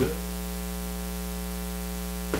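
Steady electrical mains hum with a hiss from the microphone's audio chain, and a brief thump right at the start.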